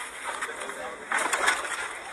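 Indistinct talk from people standing around, with no clear words.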